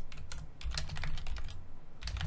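Computer keyboard keys clicking in an irregular run of keystrokes as a sentence is typed, pausing shortly before the end.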